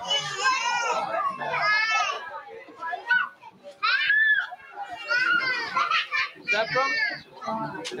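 High-pitched children's voices chattering and calling out over one another, in short bursts with brief pauses.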